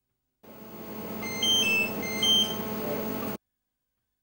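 Mobile phone ringing with an electronic ringtone: short high beeps in two quick runs over a steadier hum, cutting off about three and a half seconds in.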